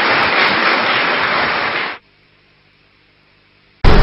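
Audience applauding, cut off abruptly about halfway through, then a moment of silence. Grand piano music starts loudly just at the end.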